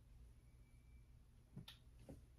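Near silence, with one faint short click near the end as clothes on hangers are handled.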